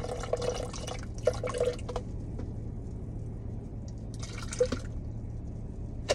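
Water poured from a plastic bottle into a plastic cup, running for about two seconds, then a shorter pour about four seconds in. A steady low hum sits underneath.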